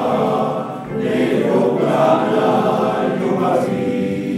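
Male voice choir singing sustained chords in several parts, with a brief break just under a second in before the next phrase begins.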